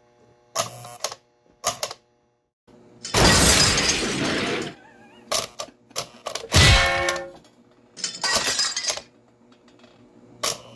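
Small metal milk cans from an American Flyer operating milk car clinking and clattering onto the platform and against each other: a run of light knocks, a harsh burst of clatter lasting about a second and a half starting about three seconds in, and the loudest hit, a clang with short ringing, near seven seconds.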